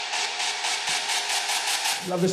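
Club dance track in a section with no bass or kick drum: rapid pulses of hissing white noise, about five a second, over a steady held synth tone.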